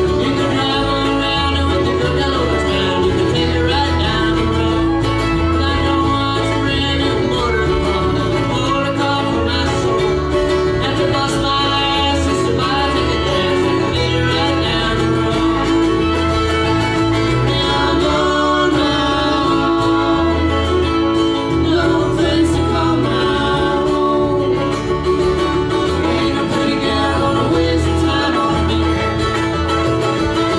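Bluegrass band playing live on acoustic instruments: banjo, acoustic guitars, fiddle and mandolin, at a steady, full level.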